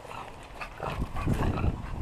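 A French bulldog making noises close to the microphone. About a second in, a run of heavier low thuds and crunches joins in and becomes the loudest sound.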